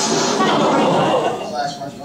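Indistinct voices of several people that start abruptly and loudly, with no clear words.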